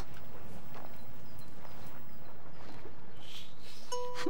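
A pen or crayon scratching in soft, irregular strokes as a picture is coloured in on paper, over a steady low background rumble.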